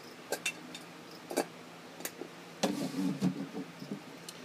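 Handling of a glass terrarium as it is opened: several separate sharp clicks and knocks of the lid and glass, then a longer stretch of low rustling and bumping about two-thirds of the way through.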